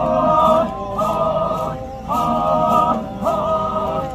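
A group of Chakhesang Naga men singing a traditional song in unison, in held phrases about a second long with short breaks between them.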